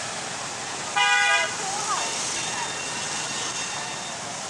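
Busy street traffic of motor scooters passing close by, with a vehicle horn beeping once for about half a second, about a second in, and voices in the background.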